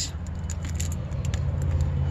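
Steady low rumble of a car idling, heard from inside the cabin, with a few faint clicks and rustles as a large plastic bottle is handled.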